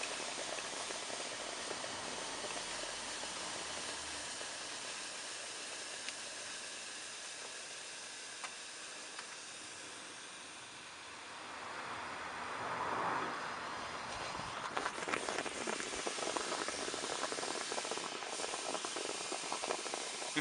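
Caustic soda (sodium hydroxide) solution fizzing and hissing steadily inside a steel seat tube as it reacts with the stuck aluminium seat post, giving off hydrogen. About twelve seconds in, more solution is poured in and the fizzing swells, then goes on more crackly.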